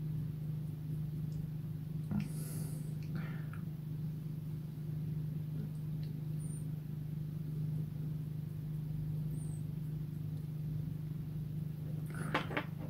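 A steady low hum, with a brief soft rustle about two and a half seconds in.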